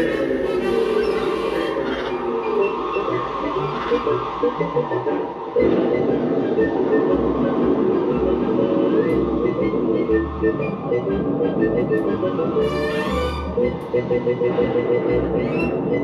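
Theme-park ride soundtrack music playing from a vinyl picture-disc record on a turntable. The music fills out about five and a half seconds in.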